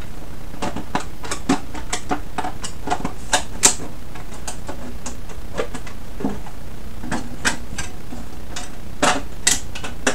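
Irregular light clicks and taps from a small white shade box being handled and fitted together by hand, with one sharper click about three and a half seconds in and a few more near the end.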